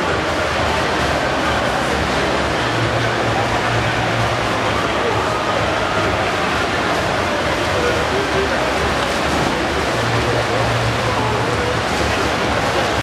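The steady din of an indoor swimming hall: many swimmers splashing in the lanes, mixed with indistinct chatter from people around the pool.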